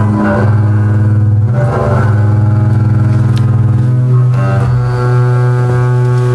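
Solo double bass played with the bow: a few long, sustained low notes, the pitch changing at about one and a half seconds in and again about four seconds in.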